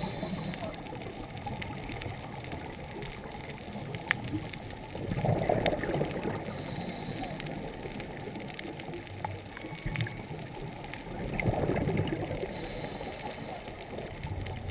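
Muffled water gurgling and sloshing heard through a camera's waterproof housing, swelling twice, about five and eleven seconds in, with a few faint clicks.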